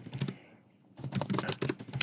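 Typing on a computer keyboard: a few keystrokes, a pause of about half a second, then about a second of rapid keystrokes entering terminal commands.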